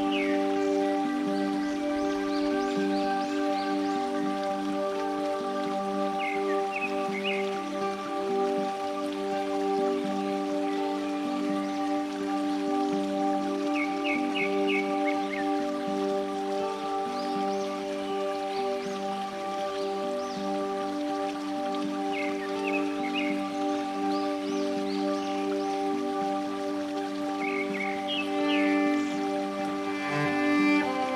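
Slow, calm new-age instrumental music of sustained held chords at an even level. Short clusters of high chirps recur about every seven seconds.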